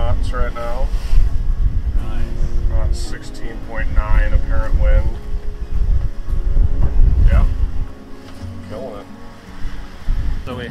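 Strong wind buffeting the microphone aboard a sailboat running fast downwind, a heavy low rumble that drops away near the end, with short bursts of voices.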